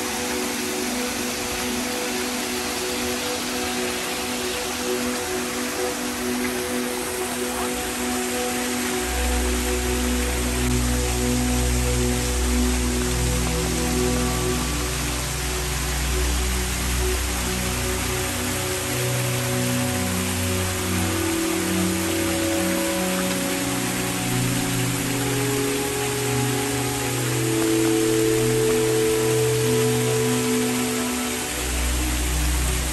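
Slow ambient background music of long held notes, with a low bass coming in about nine seconds in. Under it, the steady splashing of fountain water.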